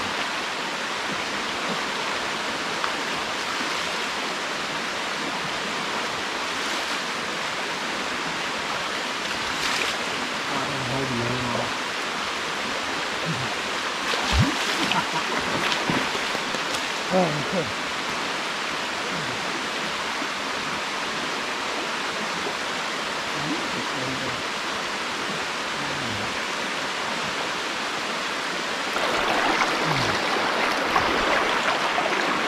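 Shallow stream running steadily over rock slabs, with some splashing and a few brief voices in the middle from men bathing in the current.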